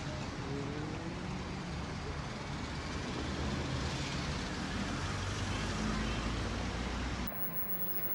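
Street traffic recorded on a phone: cars driving by on the road, getting louder in the second half, with faint voices underneath. The sound drops off suddenly near the end.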